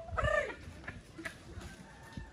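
A single short, high-pitched call, about a quarter of a second long, near the start.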